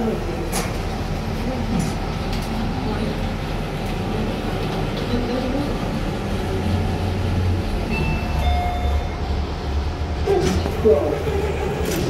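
Passenger lift car travelling down, with a steady low rumble of the car and its hoist that grows stronger in the second half. A few brief high tones sound about eight seconds in.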